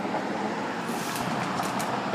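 Steady traffic noise with no clear single event.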